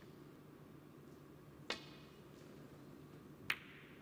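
Snooker shot: a click of the cue tip striking the cue ball, then a second, sharper click nearly two seconds later as the rolling ball makes its next contact. The second click is the loudest and rings briefly.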